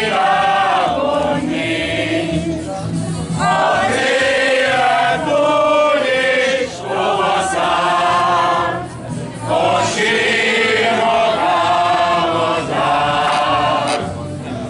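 A group of men and women singing a Hungarian song together, in phrases with brief breaks between them.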